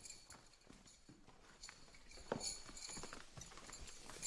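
Footsteps on a hard floor: a few irregular, faint steps and knocks, the strongest about two and a half seconds in.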